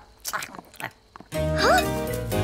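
A few faint cartoon chewing sounds, then background music comes in suddenly about one and a half seconds in, held on steady low notes.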